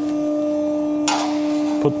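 Steady hum from a powered-up RMT R-SMART plate roll standing ready for material, with a short burst of noise about a second in as the 10-gauge steel sheet is handled.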